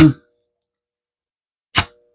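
A single short metallic clink with a brief ring, near the end, as metal strikes metal while the engine is turned over by hand.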